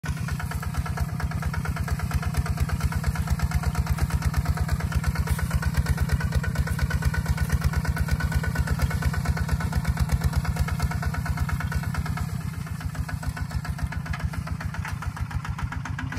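Single-cylinder diesel engine of a Kubota ZT155 two-wheel walking tractor running steadily under load while pulling a disc plow through dry soil: a rapid, even chug of about six or seven beats a second, slightly quieter from about twelve seconds in.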